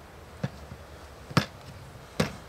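A block of clay thudding down on a wooden board twice, about a second apart, the second louder.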